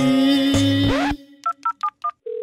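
Music ends about a second in, then a quick run of short phone keypad dialing tones (DTMF beeps) as a number is dialed.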